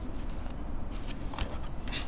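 A few soft clicks and rustles of a plastic-wrapped iPod Touch being handled in the fingers, over a steady low background rumble.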